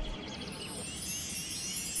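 Soft background score of faint, high tinkling chimes between lines of dialogue.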